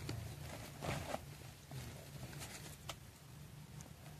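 Faint rustling and a few light, scattered clicks as hands handle a wire-mesh cage trap and a mesh bag on dry leaf litter.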